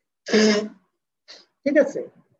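A person clearing their throat once, a short rough burst, followed by a faint breath and then the start of speech near the end.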